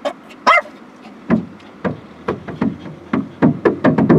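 A dog barking repeatedly in short, sharp barks at irregular intervals, coming faster near the end.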